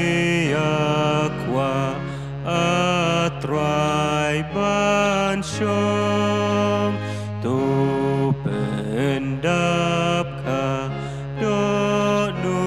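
A slow hymn tune sung to an electronic keyboard organ. The organ holds sustained chords over a steady bass, and a sung melody line slides up into each new note.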